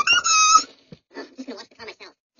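A very high-pitched, squeaky voice, like a cartoon character's. It gives a rising, wavering call in the first half second, then a run of short, quieter broken sounds.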